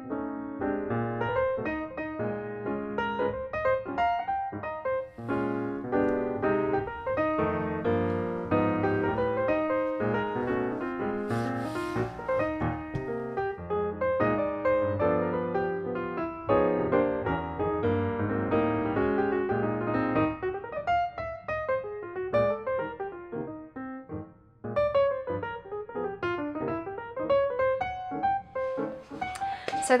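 Background piano music, a continuous run of notes, thinning out briefly a few seconds before the end.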